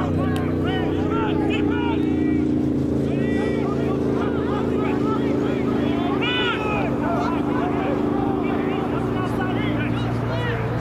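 Players shouting across a rugby pitch, short calls rising and falling, over a steady low engine drone that drops in pitch about nine seconds in.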